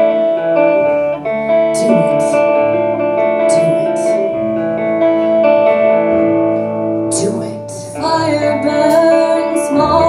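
Live rock band playing an instrumental passage: held electric guitar and keyboard chords over bass, with a few cymbal strokes. About eight seconds in the band comes in fuller and louder.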